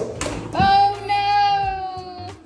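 A toddler's long, high-pitched vocal squeal, held on one note and falling slightly in pitch, starting about half a second in and lasting nearly two seconds. A short knock at the very start.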